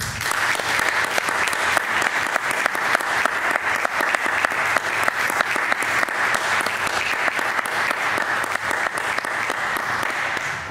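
Audience applauding steadily, breaking out all at once as the horn and piano music ends.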